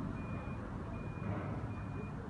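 A vehicle's reversing beeper sounding outside: a steady single high tone in short beeps, three of them about 0.4 s long at regular intervals of roughly three-quarters of a second, over a low, steady rumble of engine or traffic.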